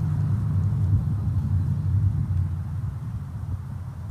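A low, fluttering rumble from the soundtrack of an outdoor home video of a child riding a bike, played over a conference room's speakers. It fades toward the end.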